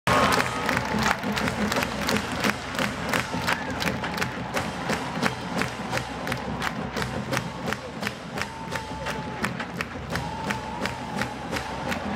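College marching band drumline playing a steady marching beat, about three strikes a second, over a cheering stadium crowd.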